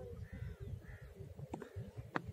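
Two short bird calls, about half a second apart, faint over a low wind rumble on the microphone.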